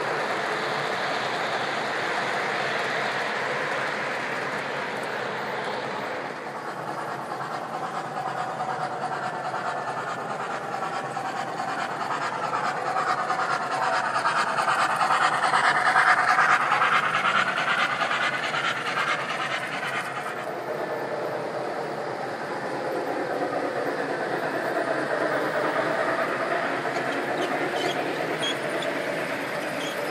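Three-rail O gauge model trains running on the layout's track: a continuous rolling rumble of wheels and motors that swells to its loudest about halfway through as a train passes close, then eases off.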